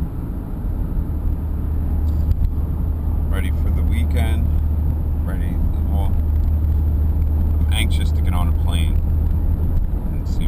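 Steady low rumble of a car's engine and tyres heard inside the cabin while driving, with a person's voice coming and going over it a few times, no clear words.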